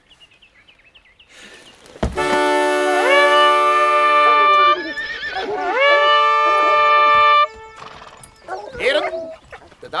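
Fox-hunting horn blown in two long, loud notes, each sliding up in pitch at its start. Horses whinny around and after the notes.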